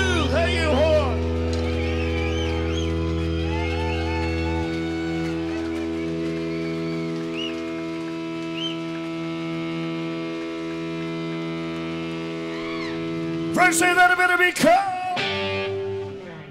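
Electric guitar and bass amplifiers ringing on a held, droning chord with feedback as a rock song ends; the lowest bass note drops out about four to five seconds in. Near the end comes a short, loud flurry of drum hits and a final chord.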